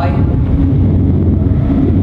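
A steady low rumble of background noise, with a brief break in a man's speech.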